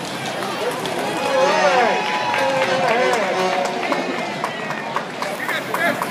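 Street crowd at a parade: many overlapping voices talking and calling out over a steady outdoor bustle, loudest a second or two in, with a few sharp clicks near the end.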